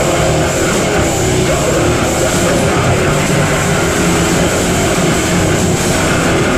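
Heavy rock band playing live and loud: distorted electric guitar, bass guitar and drums in a dense, unbroken wall of sound.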